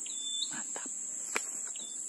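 Insects buzzing steadily at a high pitch, with a short high call repeating at the start and near the end. A single sharp click about one and a half seconds in.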